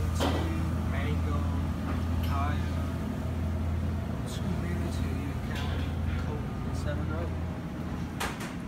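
Steady low hum of a glass-door drink cooler's refrigeration unit running, with faint voices in the background. The hum drops away near the end.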